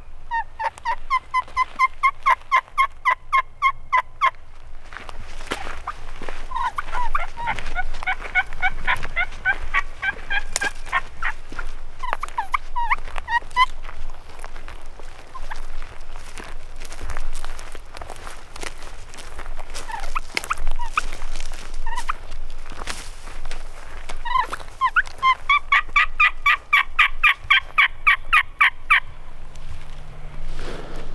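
Turkey calls: a long, fast run of evenly spaced yelping notes in the first four seconds, a denser jumble of turkey calls in the middle, and another long, fast run of notes near the end.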